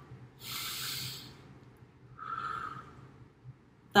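A woman's breathy vocal noises in a children's action song: a long hushing 'shh' of about a second, then a shorter voiceless puff of breath, with no sung pitch.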